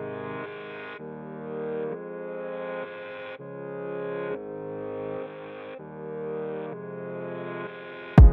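Background music: soft synthesizer chords, each held about a second before the next.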